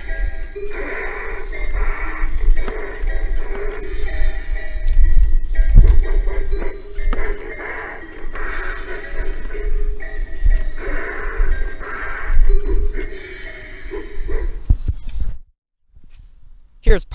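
Halloween animatronic prop playing its music soundtrack through its speaker during its demo, with a heavy low rumble underneath; the sound cuts off abruptly near the end.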